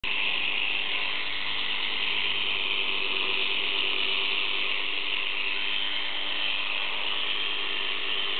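Electric sheep-shearing handpiece running steadily as a Scottish Blackface ram is shorn, a continuous high buzz.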